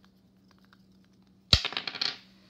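Two dice rolled onto a tabletop: a sharp first knock about a second and a half in, then a quick run of clattering clicks as they tumble and settle.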